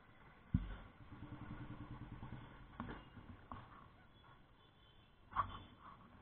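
A thump, then a nearby motorcycle engine running at low revs for about two seconds. After that come a few light knocks and a louder clunk near the end.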